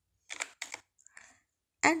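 A few quiet clicks from a computer keyboard and mouse while a new font size is entered, then a voice starts near the end.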